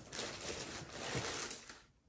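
Tissue wrapping paper rustling and crinkling as a sneaker is lifted out of it in a cardboard shoebox, faint and irregular, dying away near the end.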